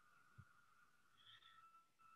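Near silence: a pause between speakers on a video call, with only a faint steady electronic tone.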